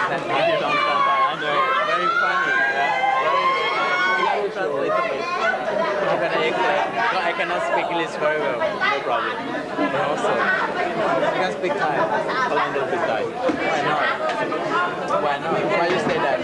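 Many people's voices talking over one another in steady chatter. A high voice rising and falling in pitch stands out in the first four seconds.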